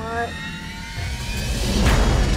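Trailer sound-design riser: a rising whoosh with upward-sweeping tones that grows steadily louder, with a short rising pitched sweep at the start.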